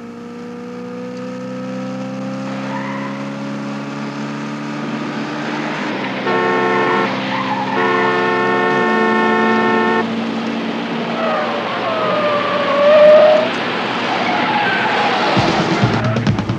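A car engine rising steadily in pitch as the car gathers speed, with its horn blaring in two long blasts, about six and eight seconds in. Tyres then squeal through bends, loudest about thirteen seconds in: a runaway car whose brakes have failed.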